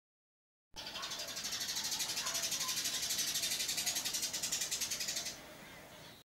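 Water showering from a plastic watering can's sprinkler rose onto a potted plant and its soil: a steady hiss with a fast, even pulse, starting about three-quarters of a second in and fading out near the end.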